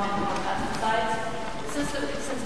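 A woman's voice speaking in a gymnasium hall, with a few faint clicks near the end.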